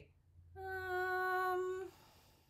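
A high-pitched voice humming one steady, level note for just over a second, a thinking 'mmm'.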